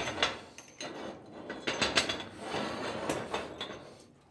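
Cast-iron hob rings of a wood-burning cooking stove being lifted and shifted with a metal lifter hook: a series of irregular metal clinks and scrapes.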